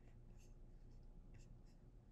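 Near silence: room tone with a few faint, soft ticks.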